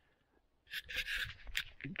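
A moment of near silence, then about a second of rustling, scraping noise with a low rumble underneath.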